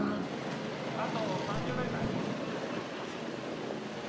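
Steady outdoor background noise with faint voices.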